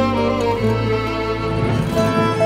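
Background score music: a violin melody of held notes over sustained low strings.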